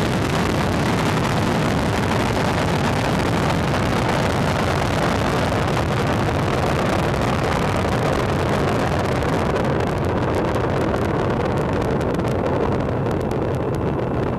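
Falcon 9 first stage's nine Merlin 1D engines firing during ascent: a steady, dense rumble and hiss. From about ten seconds in, the highest hiss thins and turns crackly.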